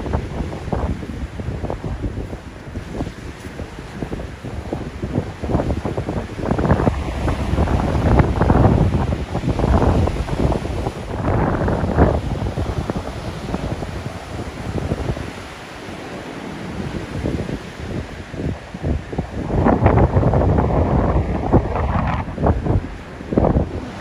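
Rough Baltic Sea surf breaking on a sandy beach, a steady rushing wash of waves. Gusty wind buffets the microphone, rising in strong surges about a third of the way in and again near the end.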